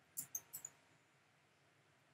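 Four quick, faint clicks of computer keyboard keys being typed, all within the first second.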